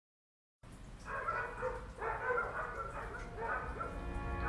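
After about half a second of silence, a cartoon dog vocalizes in four or five short bursts.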